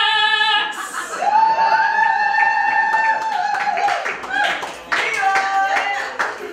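A woman's unaccompanied singing voice holds the song's last note with vibrato and stops about half a second in. Audience applause and cheering follow, with a long held whoop through the middle.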